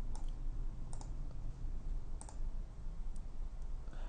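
About four faint, sharp computer mouse clicks, spaced about a second apart.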